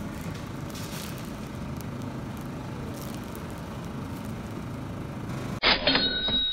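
Steady supermarket background noise: a low hum and general din with some crackle. Near the end it cuts abruptly to a louder stretch with a steady high-pitched tone.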